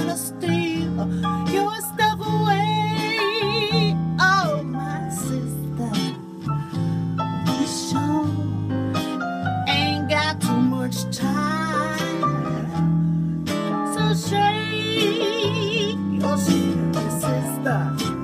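Woman singing, with wide vibrato on held notes, over a backing track with guitar.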